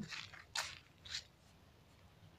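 Faint footsteps crunching on mown grass, three steps about half a second apart, then they stop.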